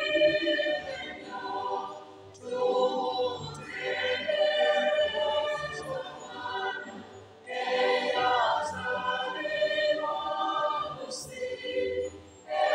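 Church choir singing a Luganda hymn in several voice parts, phrase by phrase, with short breaks between phrases about 2 seconds in, about 7 seconds in and near the end.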